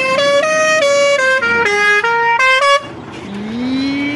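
Truck's musical horn playing a quick tune of stepped notes, each a fraction of a second long, before cutting off suddenly. A rising wail starts near the end.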